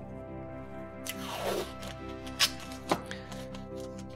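Blue painter's tape pulled off its roll in a rasping rip about a second in, then torn free with two sharp snaps, over steady background music.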